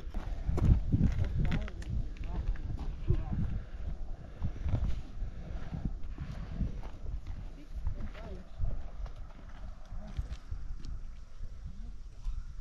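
Footsteps on a rocky, gravelly trail close to the microphone: uneven low thumps and crunches from a walking hiker, heaviest in the first couple of seconds.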